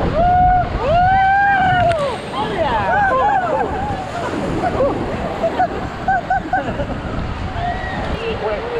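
Rafters yelling through a whitewater rapid: two long high-pitched yells that rise and fall in the first two seconds, then more shouts and short bursts of laughter, over the constant rush of the river and spray hitting the inflatable raft.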